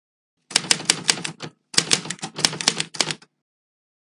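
Typewriter sound effect: two quick runs of sharp key clicks, about six or seven a second, with a short pause between them.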